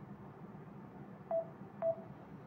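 Two short electronic beeps from a smartphone as it is operated, about half a second apart, over faint room hiss.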